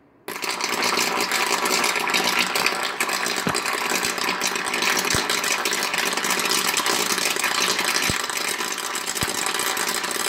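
Electrical arcing and electrolysis at bare 120-volt AC wire ends dipped in salt water: a steady crackling buzz with a low hum underneath. It starts abruptly a moment in and holds at an even level.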